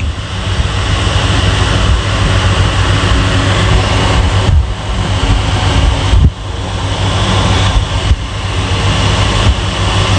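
Loud, steady rumbling noise with a deep low hum under it, dipping briefly a few times.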